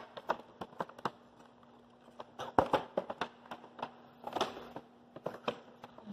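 A cardboard action-camera box being opened and its packaging handled: irregular clicks, taps and crinkles, a few sharper ones a little past the middle, over a faint steady hum.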